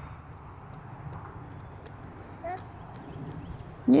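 Faint outdoor background noise with a low rumble, broken by one brief, small high vocal sound about two and a half seconds in; a woman's cheer begins right at the end.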